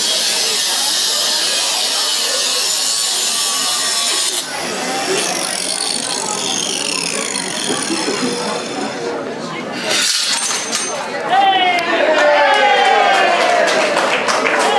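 Angle grinder cutting through the chain that binds the protesters: a high-pitched whine with several tones for about four seconds, then tones sliding downward as the disc slows, and a brief burst of cutting again near the end. Men talk over it in the last few seconds.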